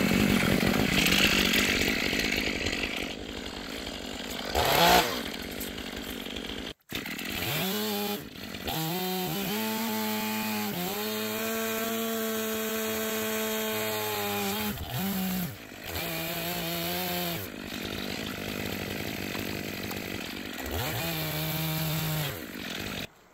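Chainsaw bucking a felled dead spruce log: the engine revs up, runs steadily at full throttle through the cut, and drops back to a lower speed several times. The sound breaks off for an instant about seven seconds in.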